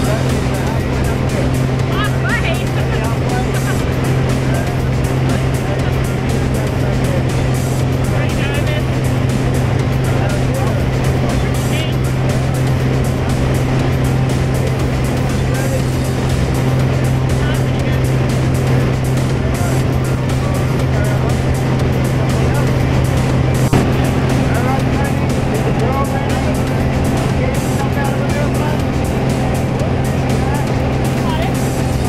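Steady loud drone of a single-engine light aircraft's engine and propeller heard inside the cabin during the climb, holding one low pitch throughout. Voices talk faintly under it.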